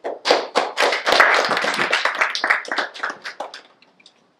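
A small audience clapping, thickest about a second in and dying away after about three and a half seconds.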